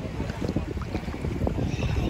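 Shallow seawater lapping and sloshing right against the microphone, an irregular low splashing.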